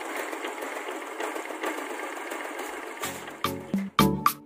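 Motorcycle engine idling with a steady, rapid ticking. About three seconds in, music with punchy plucked notes comes in over it.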